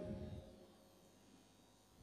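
Near silence: faint room tone of a large hall, with the tail of a man's voice fading out in the first half second.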